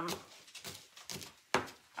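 Kitchen knife chopping a scallion on a cutting mat: a few short, irregular knocks, the loudest about a second and a half in.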